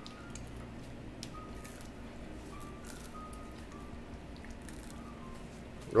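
Faint scattered clicks and soft mouth sounds of a boy biting and chewing a slice of pizza, over quiet room tone.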